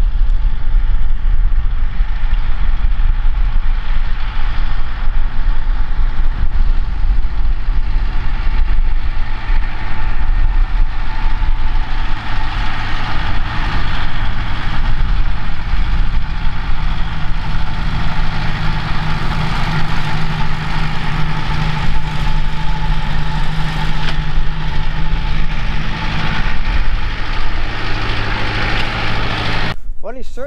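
Tractor engine running steadily while pulling a fertiliser spreader across a field, with a deep rumble; its note grows stronger past the middle and eases near the end.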